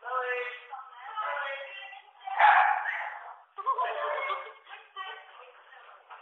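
Indistinct voices of people talking in a room, with a louder, rougher burst a little over two seconds in.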